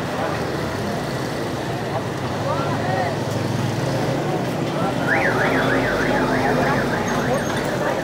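Busy street traffic with voices around; from about five seconds in, an electronic siren warbles rapidly up and down, about four times a second, for a couple of seconds.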